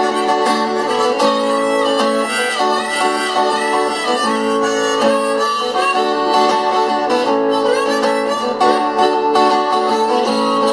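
Harmonica played as an instrumental break over strummed acoustic guitar, the guitar strokes keeping a steady rhythm under the reedy melody.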